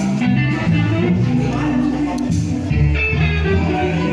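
Live blues band playing: electric guitars over bass and drums, with cymbal crashes at the start and about two seconds in.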